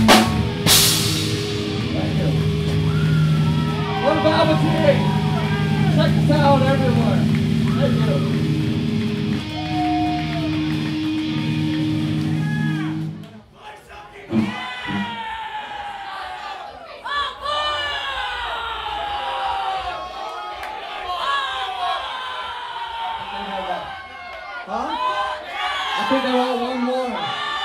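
A live rock song ends on a drum crash, with the guitar and bass left ringing through the amps in a steady low chord while the crowd shouts and cheers. About halfway through, the amps cut off suddenly, leaving the audience whooping and yelling.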